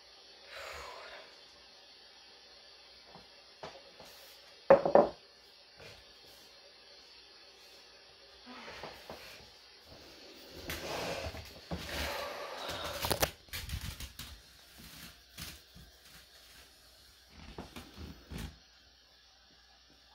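Intermittent handling noises: light clicks and rustles of things being moved, then a few seconds of rubbing and bumping as the recording phone is picked up and held close. There is one brief, louder sound about five seconds in.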